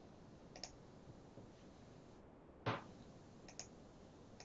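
A few faint computer mouse clicks in a quiet room: a light pair about half a second in, one sharper click a little before three seconds, and two more soon after.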